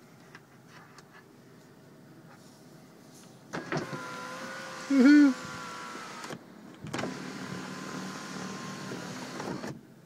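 Electric window motor of a 1997 BMW 328is running twice, each run about three seconds long with a short pause between, a steady motor whine as the glass travels. A brief, loud squeak sounds partway through the first run.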